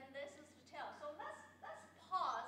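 A woman speaking in a lively lecturing voice, her pitch swooping up and down.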